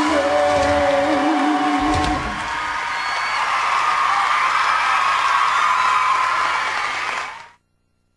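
A female pop singer's held final note, with vibrato, over the band's last chord, ending about two seconds in. A concert crowd then cheers and screams, and the sound cuts off abruptly near the end.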